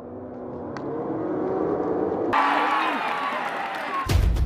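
Crowd of football spectators shouting and cheering, swelling louder as a shot flies at goal. A little past halfway a louder, brighter rush of noise cuts in suddenly, with tones sliding down in pitch.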